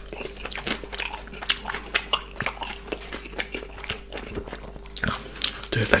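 Close-miked chewing of a mouthful of chicken burger, with irregular crunches and mouth clicks from the breaded chicken and bun.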